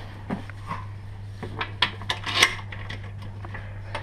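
Loose metal items clattering and clicking as a plastic tub is rummaged through in search of a small lock, a quick run of sharp clicks in the middle, over a steady low hum.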